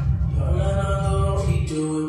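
Dance music from a live DJ mix at a breakdown: the kick drum and hi-hats drop out, and a few sustained notes in a chant-like vocal or pad layer are held in their place.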